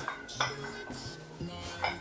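Metal dumbbell plates clinking as two plate-loaded dumbbells held together overhead knock against each other: a sharp clink about half a second in and a lighter one near the end, over background music.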